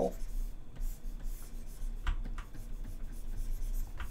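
Faint scratching of a pen stylus moving on a graphics tablet, with a couple of soft clicks about two seconds in, over a steady low hum.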